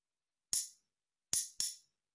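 A metal spoon and fork clinked together, tapping out a rhythm: one clink about half a second in, then two quick clinks near the end.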